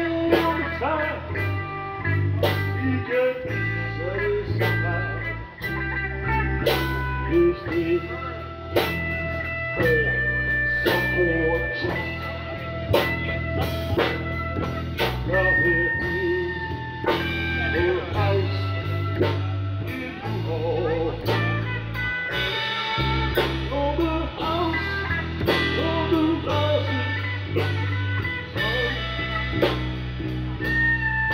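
Live blues band playing an instrumental passage: electric bass holding steady low notes, a drum kit keeping the beat, and a lead electric guitar playing a melody with bent notes.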